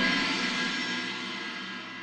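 Background music: a sustained, shimmering chord that slowly fades away.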